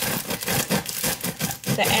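A bread knife sawing through the hard crust of a sourdough loaf: a quick run of crackles and rasps, crumbs of crust breaking under the blade with each stroke.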